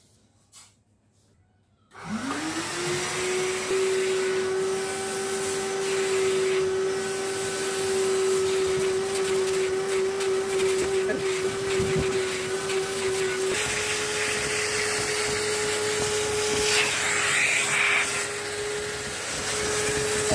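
Drum-style canister vacuum cleaner switched on about two seconds in, its motor whine rising quickly to a steady pitch and then running as the hose nozzle is worked over fabric sofa upholstery. About two-thirds of the way through, the motor's pitch steps up slightly and holds there.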